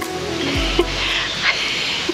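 Soft background music cuts off at the start, giving way to the steady hiss of a steaming hot-spring pool. From about half a second in there is a low wind rumble on the microphone.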